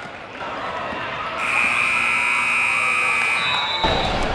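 Gymnasium scoreboard buzzer sounding one steady, high-pitched tone for about two seconds, starting over a second in, over crowd noise in the gym. It ends abruptly near the end, where louder crowd noise takes over.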